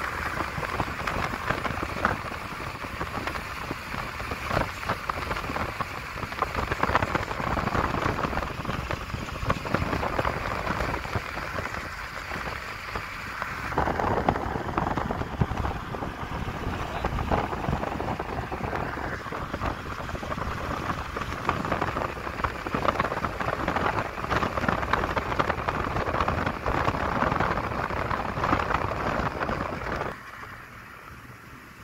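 Steady wind and road noise of a car driving at speed, with crackling wind gusts hitting the microphone.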